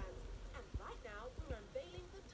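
Faint talking from a television, with a few short, soft low thuds in the middle.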